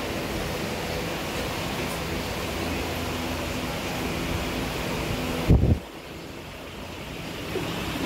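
A steady rushing noise on the phone's microphone, like air or handling noise. About five and a half seconds in there is a sharp low bump, and after it the noise drops noticeably quieter.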